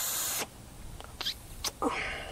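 A short blast of compressed air, about half a second long, blowing out a chainsaw carburetor's passages, followed by a few faint clicks.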